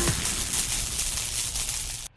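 Hissing whoosh of an electronic intro sound effect, the noise tail after the intro music, slowly fading and then cutting off suddenly at the end.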